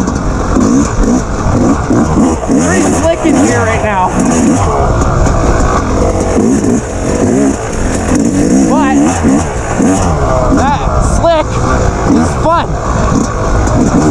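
Dirt bike engine being ridden hard along a twisting dirt trail, revving up and easing off over and over as the rider throttles through the turns.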